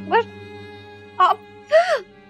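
A woman's voice making three short wordless sounds, each sliding up and then down in pitch, the last the longest, near the end, over background music of steady held notes.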